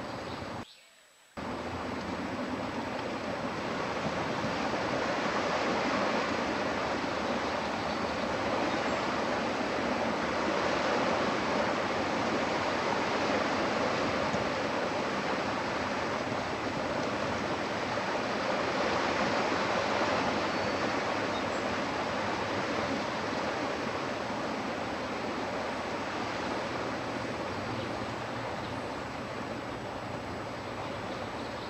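Steady, even rushing outdoor background noise through a webcam microphone, broad and featureless, swelling slightly over the middle. It drops out to near silence for about half a second near the start, then resumes.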